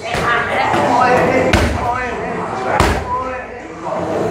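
Muay Thai strikes landing on leather Thai pads: two heavy smacks about a second apart, the first near the middle and the second later on, with voices in the gym going on throughout.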